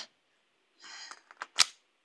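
A short breathy sound, then a few small clicks and one sharp click about one and a half seconds in: handling noise as a dropped item is picked up from the floor and brought back to a pistol.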